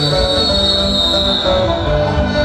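Live Andean folk dance music with rhythmic plucked-string notes. A long, high, steady whistle sounds over it and fades out near the end.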